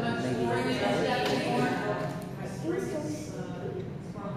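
Indistinct voices of spectators talking in an ice rink, with no clear words.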